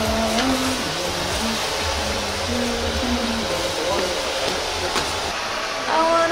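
A man softly singing a Christmas carol melody, his notes held and stepping up and down, over a steady rushing noise.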